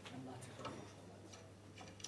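A few faint, scattered clicks and taps in a near-quiet room over a low steady hum, as the players settle with their instruments just before they start.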